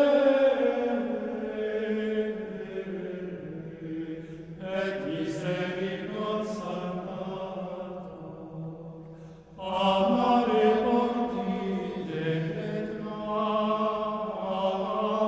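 Latin chant sung in long held notes. New phrases come in about four and a half and nine and a half seconds in, each after the singing has faded softer.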